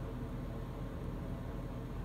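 Steady background hiss with a low hum: room tone, with no distinct event.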